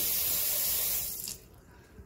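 Kitchen faucet running water into a small plastic cup, shut off about a second and a half in.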